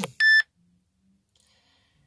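One short electronic beep: a single steady high tone, loud and brief.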